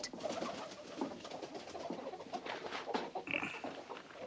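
Faint bird calls in the background, low cooing with a brief higher call about three seconds in.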